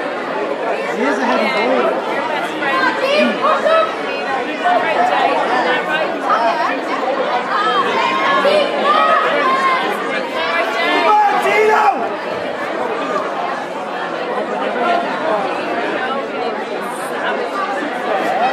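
Crowd of spectators talking and calling out all at once, many voices overlapping in a large hall.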